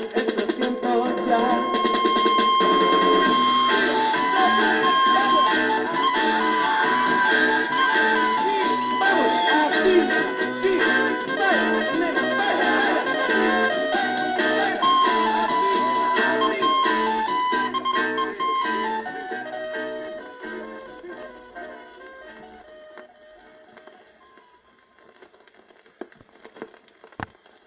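A 7-inch vinyl single playing Mexican garage-psych rock on a turntable: band music with guitar, a bass line and a repeating high riff. It fades out over the last several seconds.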